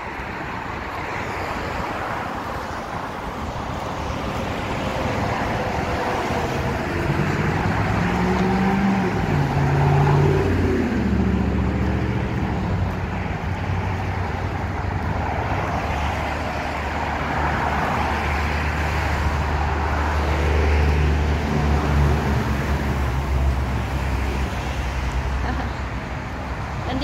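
Interstate 90 expressway traffic passing below, a steady wash of tyre and engine noise. Around the middle a heavy vehicle's engine comes through, its note falling, followed by a deep rumble lasting several seconds.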